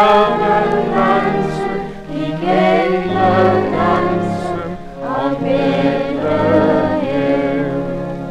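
A choir singing a Christmas song in long held phrases over low sustained accompaniment, from a 1954 78 rpm record.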